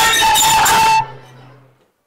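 Bayalata folk-theatre accompaniment music with jingling percussion and a held high note, stopping abruptly about a second in; a low tone fades away after it.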